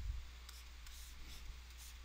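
Faint scratching and light ticks of a stylus on a tablet as a box is drawn by hand, over a steady low hum.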